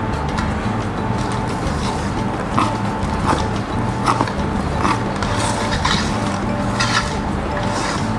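Wire whisk stirring melted butter into thick cake batter in a stainless steel bowl, with a few light clinks against the bowl, over a steady low hum.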